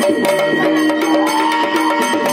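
Yakshagana ensemble music: rapid hand-drum strokes and small cymbal strikes keep a brisk rhythm over a steady drone, with a long gliding melodic note in the second second.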